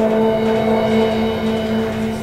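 Trombone holding a long final note over the jazz band's sustained closing chord, the sound beginning to fade near the end.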